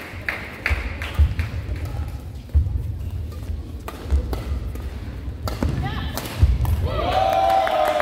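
Dull low thumps on a sports-hall court floor, five or six spread irregularly over the seconds, with a few sharp clicks among them. Near the end a drawn-out voice call rings out and echoes in the large hall.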